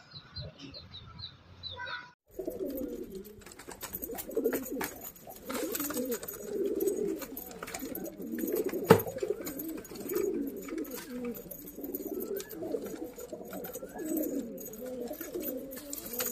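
Domestic pigeons cooing steadily in a wooden loft box, a continuous low warbling coo, with scattered light clicks and one sharp knock about nine seconds in. Short high chirps are heard for the first two seconds before the cooing starts.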